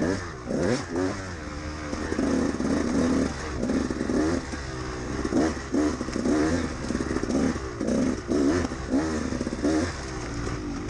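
A 2013 KTM 200XC-W's two-stroke single engine revving up and down over and over as the throttle is opened and closed, heard from on board the bike.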